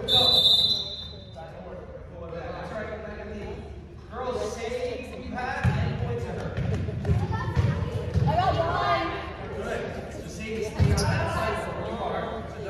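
A referee's whistle blows once for about a second, the loudest sound here. Then a basketball bounces on the gym floor amid players' and spectators' voices, all echoing in a large gym.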